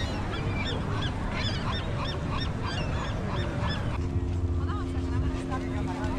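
Seagulls calling over and over, about two calls a second, over a low rumble of wind and surf. The calls stop about four seconds in, and a steady low hum takes over.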